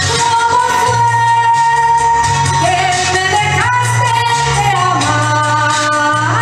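A woman sings a ballad into a microphone over instrumental accompaniment. She holds a long note, then slides up in pitch about halfway through and holds again.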